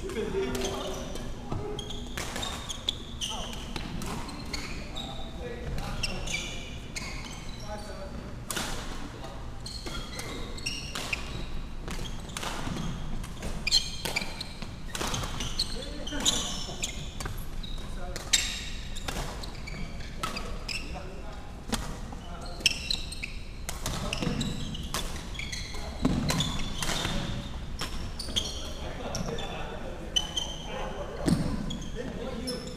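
Badminton play in a large, echoing sports hall: repeated sharp racket strikes on the shuttlecock, the loudest a few seconds apart in the second half, with short, high sneaker squeaks on the wooden court floor and voices in the background.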